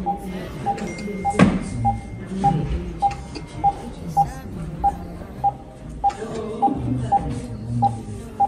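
Hospital medical equipment beeping: one short mid-pitched electronic tone repeating evenly, a little under twice a second. A single sharp knock sounds about one and a half seconds in.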